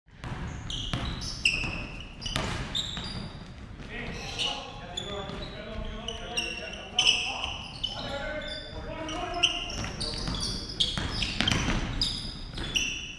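Basketball bouncing on a hardwood gym floor as it is dribbled, with many short, high sneaker squeaks from players cutting on the court, all echoing in a large gym.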